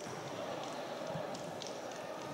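Futsal being played on an indoor court: players' running footsteps and a few short high shoe squeaks over the steady murmur of the sports hall.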